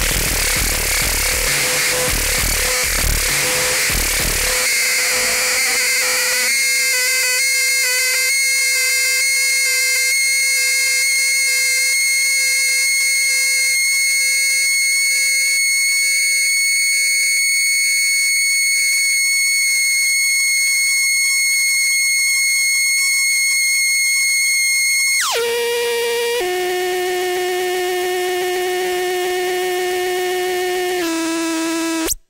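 Live experimental electronic music. A dense noise wash with low pulses gives way, about six seconds in, to a steady high electronic tone over a low hum. Near the end the tone glides sharply down in pitch and settles into a lower steady drone.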